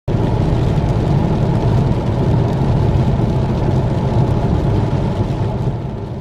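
Car driving on a wet road, heard from inside the cabin: a steady rumble of engine and tyres with a hiss from the wet road, tapering off near the end.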